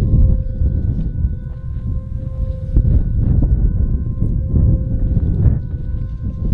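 Wind buffeting the camera microphone on an open, snowy slope: a heavy, fluctuating low rumble throughout, with faint steady tones underneath.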